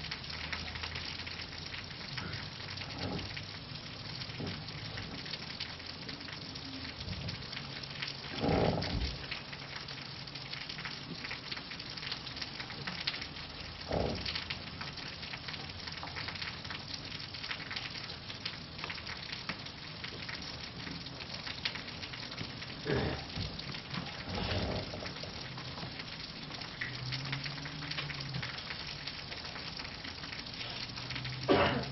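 A steady hiss of background room noise, with a faint low hum and a few short, isolated knocks and rustles scattered through it.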